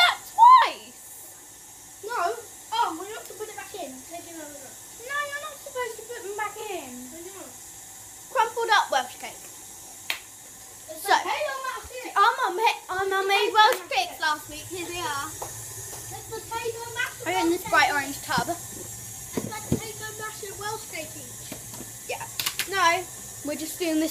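Children's voices talking, mostly one girl speaking close to the microphone, with a faint steady low hum from about halfway through.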